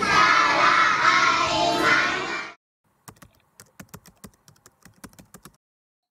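Children singing a song with musical accompaniment, which cuts off suddenly about two and a half seconds in. A run of faint, irregular clicks follows for a couple of seconds.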